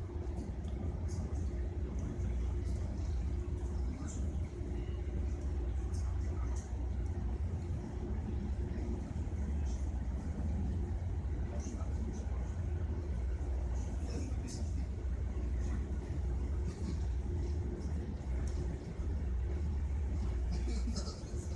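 Steady low rumble of a moving train heard from inside the passenger carriage, with scattered light clicks and rattles and a faint steady hum that fades about halfway.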